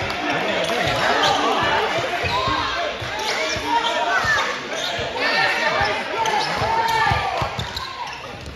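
A basketball being dribbled on a hardwood gym floor, with repeated low bounces, under spectators talking and shouting.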